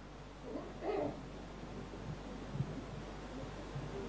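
Quiet lecture-hall room tone while an audience votes silently, with a brief faint voice about a second in and a few soft knocks.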